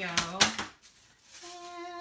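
A woman's voice finishing a word, a short sharp tap about half a second in, then a steady hummed note starting near the end.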